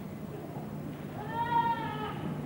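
A single short, high-pitched call lasting under a second, starting about a second and a half in and rising then dipping slightly in pitch, over a low steady hum.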